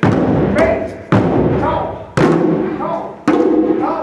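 Djembe hand drums struck together in unison about once a second, four loud strikes, each left to ring out briefly, with a voice calling between the strikes.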